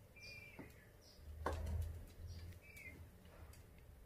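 Two faint, short chirps from peafowl, one near the start and one near the end, with a single click about halfway through.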